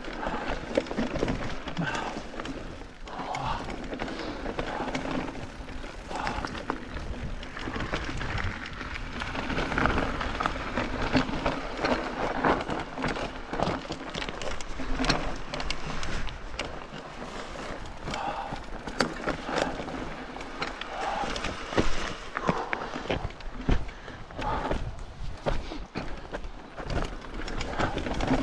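Mountain bike ridden over a rough, stony trail: tyres rolling on rock and loose stones, the bike rattling and knocking over the bumps, with low rumble on the microphone.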